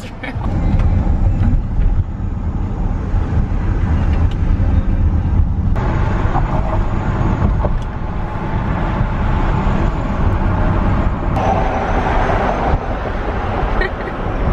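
Wind rushing and buffeting through an open car window over steady road rumble as the car drives along; the rushing grows louder about six seconds in.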